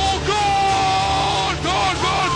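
A voice holds one long high note for about a second over music with a steady bass line, set between shorter gliding vocal phrases.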